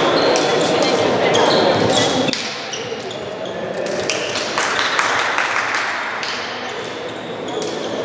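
Voices and calls echoing in a large sports hall, with many short sharp hand slaps as the handball players high-five one another along the line.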